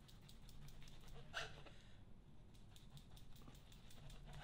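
Near silence: quiet room tone with faint soft scraping of a knife cutting away grapefruit peel on a cutting board, and a brief faint hiss about a second and a half in.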